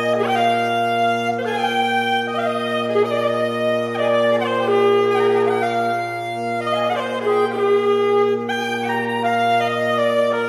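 Saxophone quartet (soprano, alto, tenor and baritone) playing: a steady low drone is held throughout while the upper saxophones play a moving line of notes above it.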